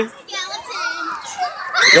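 Several children's voices chattering and calling over one another, with a louder voice coming in near the end.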